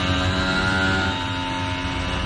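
Red Bull RB20 Formula One car's turbocharged 1.6-litre V6 hybrid engine running at steady revs, a held, buzzing note with many overtones and no revving.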